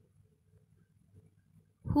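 Near silence with a faint low hum: a pause between spoken sentences, with a woman's voice starting just before the end.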